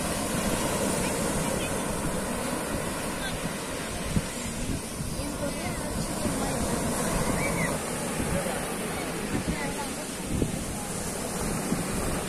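Sea surf breaking and washing up onto a sandy beach: a steady rush of waves.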